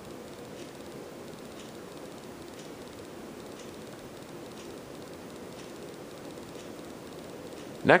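Hampton Bay Renwick 52-inch hugger ceiling fan running on high speed: a steady, pretty quiet whoosh of air from the spinning blades, with a soft motor hum.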